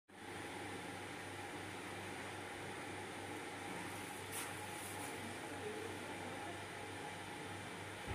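Steady hum and hiss of equipment running in a hemodialysis ward, with one brief soft rustle about halfway through.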